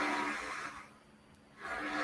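Faint steady background hum and hiss from a video-call microphone. It drops to dead silence for about a second midway, then returns.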